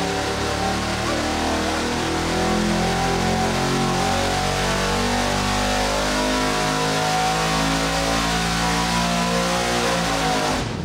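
Supercharged 427 cubic inch LSX V8 making a full-throttle dyno pull, revs climbing steadily from about 3,000 to about 7,000 rpm. It is running on a smaller 84 mm supercharger drive pulley, giving about six pounds of boost.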